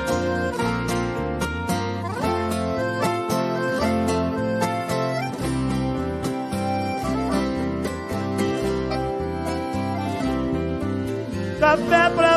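Live sertanejo band playing an instrumental passage: a picked acoustic guitar melody over a steady bass line. A singing voice comes in near the end.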